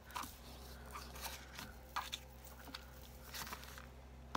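Faint rustles and light taps of a wooden-block rubber stamp being handled, inked and pressed onto a sheet of paper on a cutting mat. The taps are short and scattered, with a small cluster near the end.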